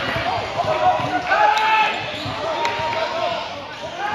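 Crowd noise in a school gym during a basketball game: many spectators talking and calling out at once, with a basketball bouncing on the hardwood court a few times.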